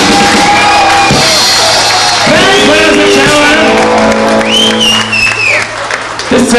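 Live band with acoustic guitar, electric guitar and drums playing the close of a song: sung vocals over a held chord that drops in level near the end.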